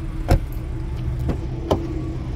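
A car door shuts with one solid thump, then lighter clicks of a door handle and latch follow as another door is opened, over a steady low rumble.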